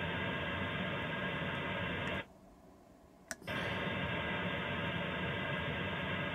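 Radio receiver audio from an Airspy SDR running in GQRX: a steady hiss of broadband hash with a buzz of evenly spaced tones, noise from the power inverter, and no clean carrier from the keyed-down transmitter. It cuts out a little after two seconds and comes back with a click about a second later.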